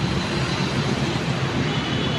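Steady low rumble of city street traffic noise, with a faint thin high tone near the end.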